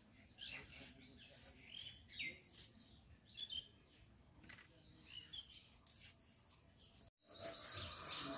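Small birds chirping intermittently and faintly, with soft clicks as capsicum is cut on a boti blade. The sound drops out briefly just after seven seconds, then a louder passage begins.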